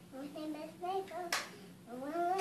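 A young girl's voice, then a single sharp hand clap a little past halfway.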